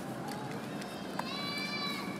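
A baby macaque's long, high-pitched cry, starting a little past halfway and held on one steady pitch. A single sharp click comes just as the cry begins.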